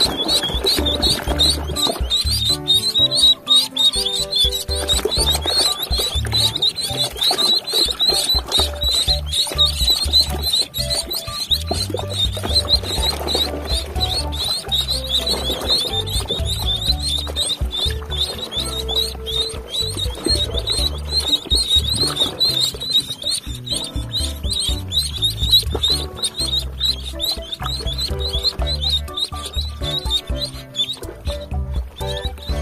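Ducklings peeping rapidly and without pause, several short high peeps a second, over background music.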